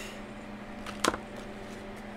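A single short, sharp click as hands handle a ring binder and the cash pocket inside it, over a faint steady hum.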